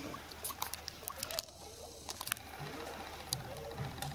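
Quiet room sound of a waiting audience in a large hall: scattered small clicks, taps and rustles over a faint low hum, with no music playing yet.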